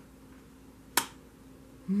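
A single sharp snap about a second in as a tarot card is laid down onto the spread of cards. A woman's hummed "mm-hmm" begins right at the end.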